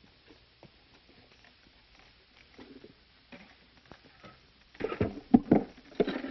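Light scuffs and ticks of movement, then a burst of louder sharp knocks and scrapes near the end.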